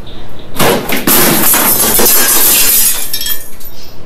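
Glass smashing and shattering in a loud crash that starts about half a second in and goes on for about three seconds.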